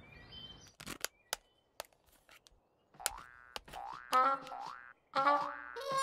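Cartoon sound effects: a few faint light taps, then from about halfway a run of springy boing sounds, each rising in pitch. A voice calls "fire" near the end.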